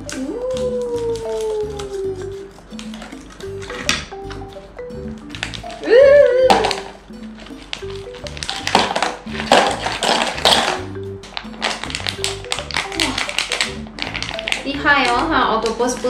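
Background music with a steady repeating beat. About halfway through, crinkling plastic packaging and clams rattling into the pot's plastic tray. A short voice-like sound comes about six seconds in.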